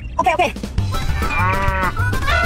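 A cow mooing: one arching call in the second half, over background music with a steady low beat.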